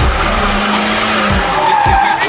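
Pickup truck doing a burnout: the engine is held at high revs while the tyres spin in place and screech. The engine note breaks off about a second and a half in, and a higher tyre squeal rises near the end.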